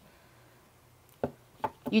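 About a second of near silence, then three short, sharp clicks, the first the loudest, as a small deck of cards is shuffled and handled.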